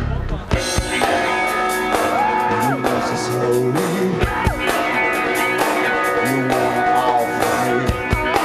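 Live rock band playing heavy rock with distorted electric guitars and a drum kit. The sound breaks off briefly just after the start, then the full band comes back in with sliding guitar lines over a steady beat.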